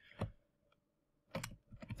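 A few separate computer keyboard keystrokes: one about a quarter second in, then a short cluster of two or three near the end.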